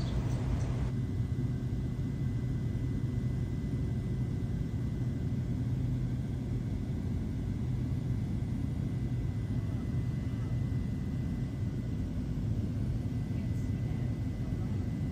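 Steady drone of a small Cessna plane's engine and propeller heard from inside the cabin in level flight: a low hum with a thin steady high tone above it.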